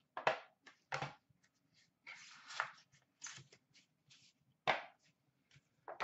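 Handling of a hockey-card tin as it is opened: a few sharp clicks and knocks, with a short rustling scrape about two seconds in, as the lid comes off and the inner tray is slid out.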